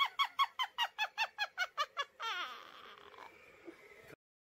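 A woman in costume as a witch gives a high-pitched witch's cackle: a rapid run of about a dozen short notes, each falling in pitch, about five a second. It trails off into a fainter cackle from about two seconds in.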